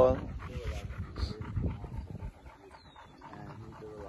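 A dog panting close by, with faint voices in the background.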